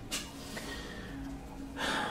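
A quiet pause in which a woman draws an audible breath in near the end, just before she speaks again.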